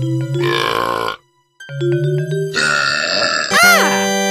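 Cartoon burp sound effects over light, plinking background music. A burp about half a second in cuts off to a moment of silence, then a second, longer burp comes with the returning music, followed near the end by a short tone that rises and falls.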